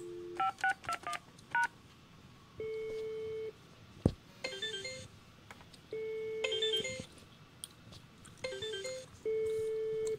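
Desk phone keypad beeps as an extension is dialled, then the ringback tone sounds in pulses of about a second. Between them an iPhone plays the EZUC+ app's incoming-call notification, a short chiming ring heard three times about two seconds apart. One sharp click about four seconds in.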